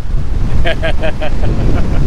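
Strong wind, about 30 mph, buffeting the camera microphone: a loud, unbroken low rumble that covers everything else.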